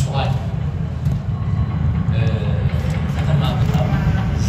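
A man speaking to an audience in a hall, over a steady low rumble.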